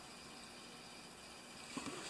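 Faint, steady room hiss with no distinct sound, and a couple of faint clicks near the end.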